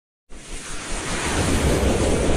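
Logo-intro sound effect: a swelling whoosh of rushing noise over a low rumble, starting about a quarter second in and growing louder.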